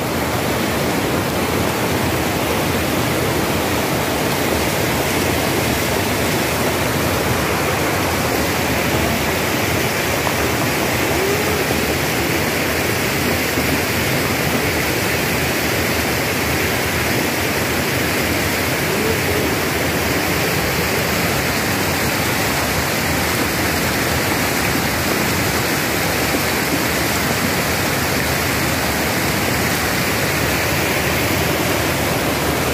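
Floodwater rushing down a street as a fast torrent, mixed with heavy rain: a loud, steady, unbroken roar of water.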